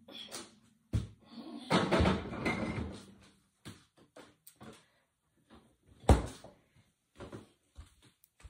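Refrigerator door being opened and later shut with a sharp thump about six seconds in, with knocks and rattles as a jug is put away inside.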